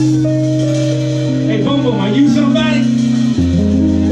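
Live funk band playing: a long held organ chord over bass and guitar, with a voice calling out briefly in the middle. The bass steps down to a lower note about three and a half seconds in.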